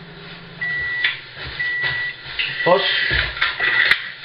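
Microwave oven's end-of-cycle beeper sounding a run of steady high beeps, each about half a second long and about a second apart, signalling that the cooking time has run out.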